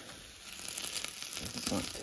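Vegetables sizzling faintly in a frying pan, with light crackles and the scrape of a utensil stirring them.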